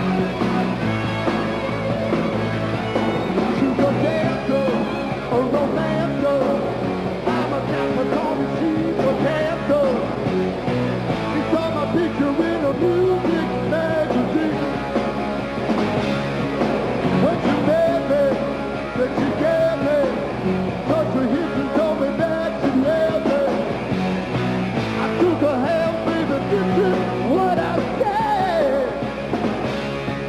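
Live hard rock band playing a song: electric guitars and a drum kit at full volume.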